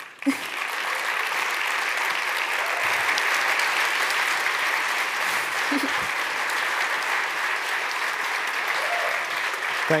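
Audience applauding steadily, the clapping starting just after the speaker's closing words.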